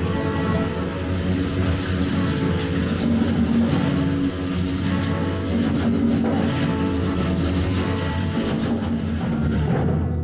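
Live band music: congas played in a busy rhythm of sharp strokes over acoustic guitar.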